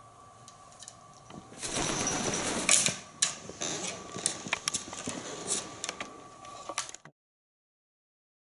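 An African grey parrot's wings making a rustling flutter in a short flight, then its claws tapping and scraping on a wooden tray table in a run of sharp, irregular clicks.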